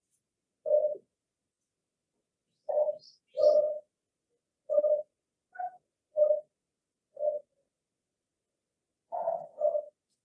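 A dove cooing: a run of about nine short, low coos spaced unevenly, one slightly higher near the middle. A faint high chirp comes about three seconds in.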